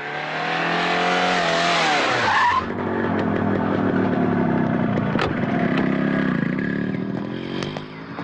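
A car skidding to a halt with tyres screeching, the noise dropping in pitch and cutting off after about two and a half seconds. Then vehicle engines run steadily.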